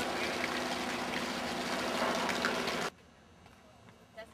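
Steady rushing of water with a low hum beneath it, cut off abruptly about three seconds in, after which it is much quieter.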